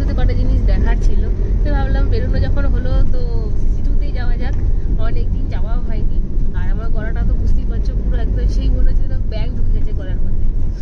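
Steady low road and engine rumble inside a moving car's cabin, under a woman talking.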